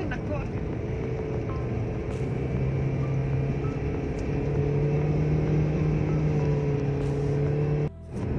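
Steady road and engine drone inside a moving car's cabin at highway speed, with a low hum that steps up slightly in pitch partway through.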